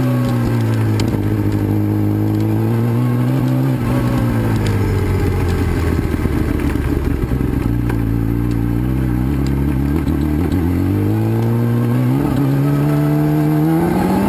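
Motorcycle engine running while the bike is ridden along a rough dirt trail. Its note drops over the first few seconds, stays low and steady through the middle, then climbs again near the end as it is revved up.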